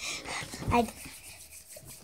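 A child's brief 'mm-hmm', with faint rubbing and a few light clicks of hands and bowls being handled on a table.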